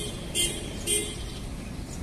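A vehicle horn tooting three short times, about half a second apart, over low traffic rumble.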